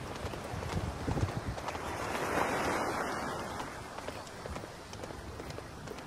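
Wind on the microphone, swelling to a hiss about halfway through, with faint dull thuds of horses' hooves walking on sand.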